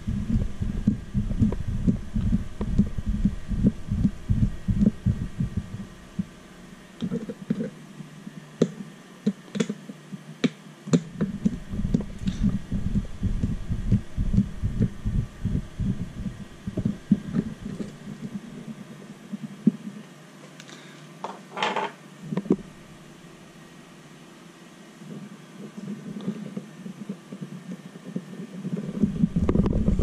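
Hand-turned small screwdriver taking screws out of a cover on an RC rock crawler chassis, with a low, irregular rumbling from hands and arms working right against the microphone and a scatter of small clicks. A short squeak comes about two-thirds of the way through.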